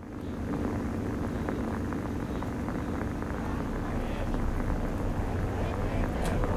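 Radio static recorded on a flip phone: a dense hiss full of crackles over a low hum, starting abruptly.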